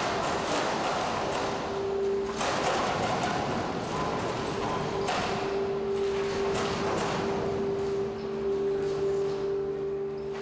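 A full-scale timber building on a seismic shaking table, shaken during an earthquake test. Dense rattling and knocking from the structure and its contents runs over a steady hum from the test machinery.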